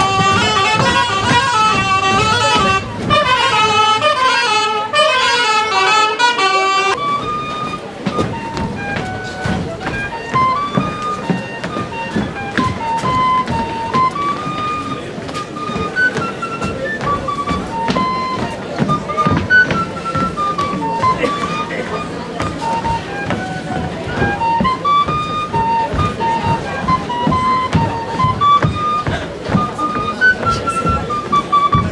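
Live traditional folk dance music from a small band: a full, reedy melody with rich overtones for the first seven seconds or so, then a thinner, higher single tune line. Short taps of the dancers' shoes on the stage run under the music.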